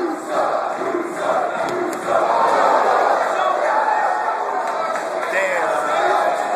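Crowd of boxing spectators shouting: rhythmic, chant-like shouts for the first couple of seconds, then louder massed shouting and cheering from about two seconds in.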